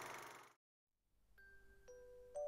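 A steady noise fades out in the first half second. After a brief silence, background music begins near the end with two soft, ringing bell-like notes about half a second apart.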